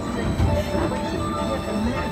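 Ride vehicle running along its track with a steady low rumble, the ride's soundtrack faint above it.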